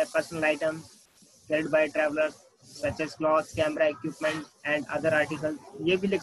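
A man's voice speaking in short phrases with brief pauses, with a faint hiss near the start.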